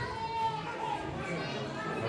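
Chatter of several voices, children among them, with no clear words.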